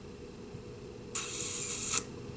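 Quiet room tone, then a short, high hiss that starts a little past halfway, lasts just under a second and cuts off sharply.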